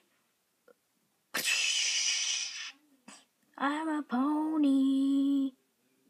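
A sudden loud harsh hiss-like noise lasting about a second, then a person's voice holding a long cry that wavers at first, breaks once, and then stays on one pitch before stopping abruptly.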